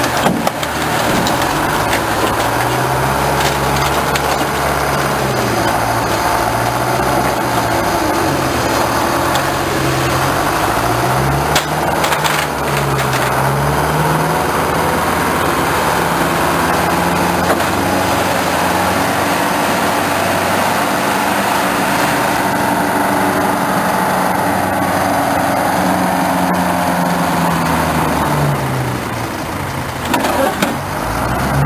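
Heavy machinery engine running steadily, its pitch repeatedly sagging and climbing again as it comes under load, with a few knocks about twelve seconds in.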